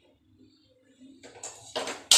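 Near-quiet room tone, then about a second in a short stretch of rustling handling noise that grows louder near the end.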